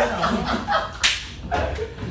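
A single sharp slap about a second in, amid the murmur of several young men's voices.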